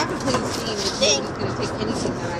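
Steady road and engine noise inside a moving car, with brief indistinct bits of voice.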